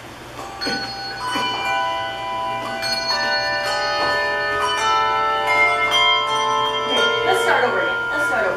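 A choir of handbells ringing, struck one after another so that their long ringing tones pile up and overlap into a sustained, ringing chord.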